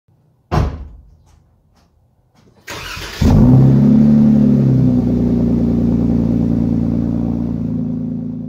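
A thump and a few light clicks, then a starter cranks briefly and a vehicle engine catches with a short rev before settling into a steady idle that begins to fade near the end.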